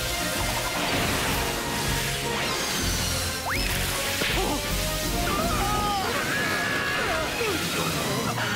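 Cartoon fight soundtrack: background music mixed with whooshing spin effects and crashes. Brief gliding voice-like cries come in around the middle and near the end.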